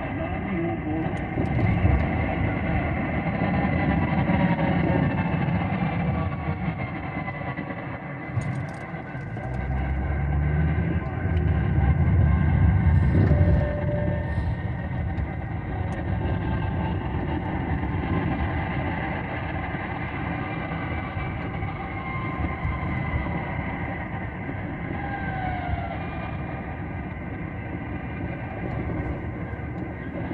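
Car driving at city speed, heard from inside the cabin: steady road and engine noise, with the rumble growing louder for a few seconds about a third of the way in.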